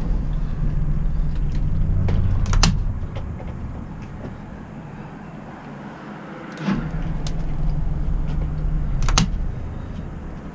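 Boat engine run up twice in short bursts of about three seconds, with a quieter lull between, while nudging the boat slowly into position. A sharp knock comes as each burst ends.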